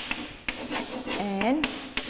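Chalk scratching and tapping on a blackboard as letters are written, with a few sharp taps on the strokes.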